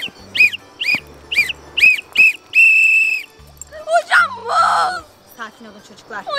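A whistle blown in a marching rhythm: five short rising-and-falling blasts about two a second, then one long held blast. Background music with bass notes runs underneath, and a brief voice-like sound comes near the end.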